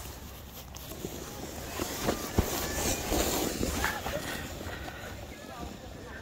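A sled sliding over packed snow, a scraping hiss that swells about two seconds in and fades as it moves away, over a low rumble of wind on the microphone.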